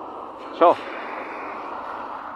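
Steady hiss of car tyres on a rain-soaked road as cars drive through the wet street.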